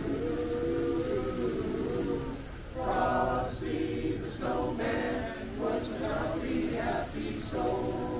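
Men's barbershop chorus singing a cappella in close harmony: a long held chord, then from about three seconds in a run of short, rhythmic sung syllables.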